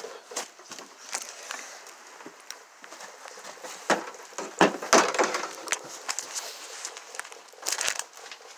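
Handling noise of a phone being carried about: rustling and scraping against clothing and the microphone, with sharp clicks and knocks, a cluster of them about four to five seconds in and again near the end.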